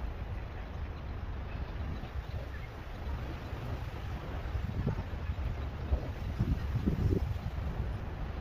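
Wind buffeting the microphone outdoors: a steady low rumble, with stronger gusts in the second half.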